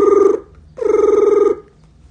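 A telephone's double ring: two short buzzing rings of under a second each, with a brief gap between them.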